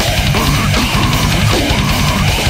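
Brutal death metal / grindcore studio recording: fast, dense drumming under low, distorted guitar riffing.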